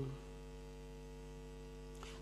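Steady electrical mains hum in the audio chain, a low, even buzz of several constant tones with no change through the pause.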